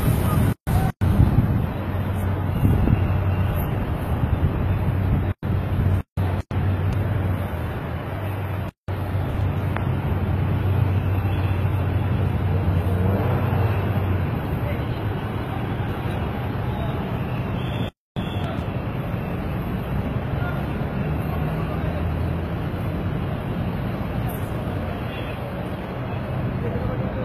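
Steady city traffic noise with indistinct voices of bystanders mixed in. The sound cuts out completely for an instant several times.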